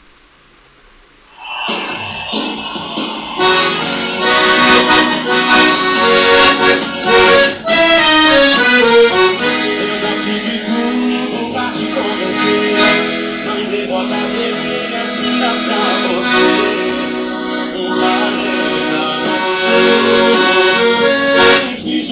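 Maestrina piano accordion starting to play about a second and a half in, then playing a song's melody on the keyboard over bass and chords from the buttons, continuously.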